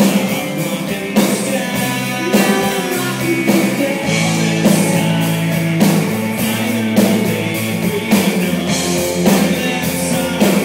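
Live electric rock band playing a song: guitars, bass and drum kit at a steady tempo, with a hard drum hit about every second and a bit.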